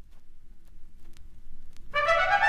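Faint low rumble and a thin steady hum with a few soft clicks, growing louder. Right at the end, music with trumpet and strings comes in loudly.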